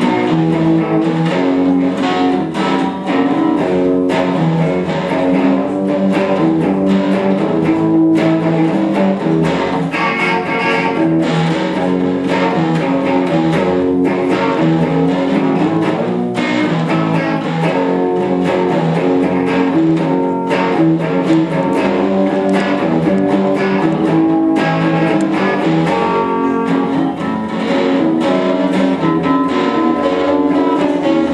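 Live instrumental rock played on electric guitar and acoustic guitar, the guitars strummed and picked in a steady, continuous rhythm.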